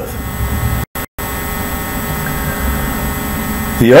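Steady electrical mains hum with a low background rumble, broken by two brief dropouts to total silence about a second in.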